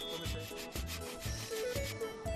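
Hand saw cutting into a log, its repeated strokes rasping through the wood, over background music with a steady beat.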